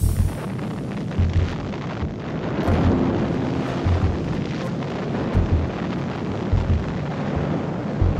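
A gasoline tank-farm explosion goes off at the start, followed by the noise of a large fire burning, with low thuds every second or so.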